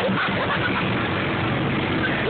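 Speedboat engine running steadily at speed under tow, with the rush of water from the churning wake.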